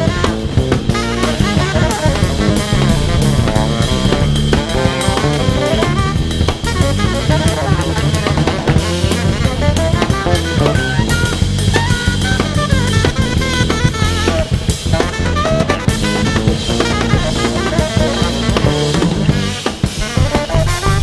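Live jazz-rock band playing: two saxophones weave melodic lines over a busy drum kit and electric bass.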